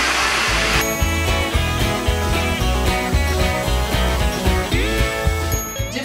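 A hair dryer blows for under a second, then background music with a steady bass beat takes over.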